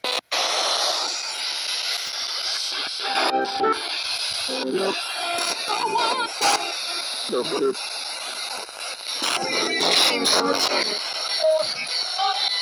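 Spirit box (a handheld radio rapidly sweeping through stations) running: continuous loud static hiss, cutting in just after a brief dropout, chopped by split-second snatches of broadcast voices and music. The ghost-hunter takes some of these fragments for spirit voices saying "No one" or "Someone" and "Don't forget me".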